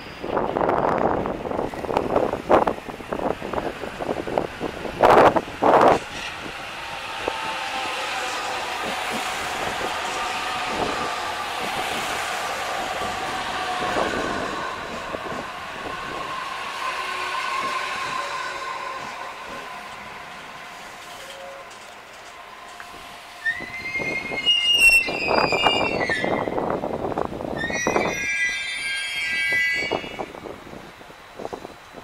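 Trains at a station platform: a rumble with sharp buffeting about five and six seconds in, then the steady multi-tone whine of an E721 series electric train running for about fifteen seconds, and high squeals near the end.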